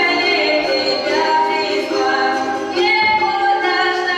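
Music: a song of several female voices singing long, held notes, with no drumbeat.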